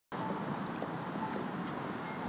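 Steady street noise from traffic passing through an intersection, with wind on a phone's microphone.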